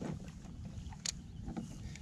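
Quiet background aboard a kayak on still water: a faint low rumble, with one sharp click about a second in and a few fainter ticks.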